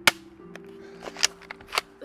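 A toy pump-action gun firing, with sharp snaps: a loud one right at the start and two more about a second in, plus a few fainter clicks. Background music runs underneath.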